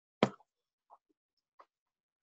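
Near silence on a remote-meeting audio line, broken by one short, sharp click or mouth sound about a quarter of a second in, and two faint ticks later.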